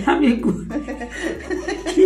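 A man and a woman chuckling and laughing together, breaking into laughing speech.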